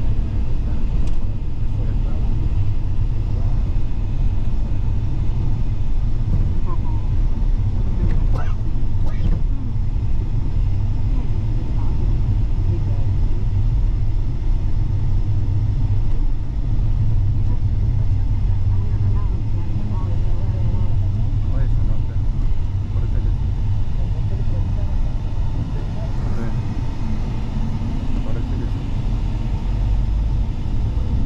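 A moving car's engine and tyre road noise heard from inside the cabin: a steady low rumble that holds an even level throughout.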